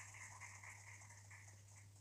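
Near silence: a faint steady low hum with light hiss.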